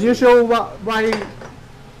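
A metal cooking utensil clinking against a pot on the stove, mixed with a few spoken words in the first second.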